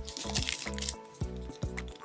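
Upbeat background music with a steady beat and sustained tones, with faint crinkling of a clear plastic card sleeve being handled.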